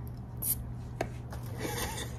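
Quiet room with a low steady hum, a short breathy hiss about half a second in and a small click about a second in, with a faint murmur of voice near the end, while a song is mouthed without being sung aloud.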